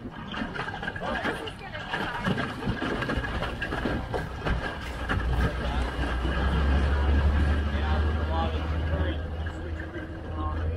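Outboard jet motor driving a jon boat at speed through shallow river water, mixed with rushing water and wind noise. A deep rumble swells louder in the second half.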